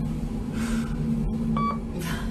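Steady hum inside a lift cabin, with a short electronic beep about one and a half seconds in.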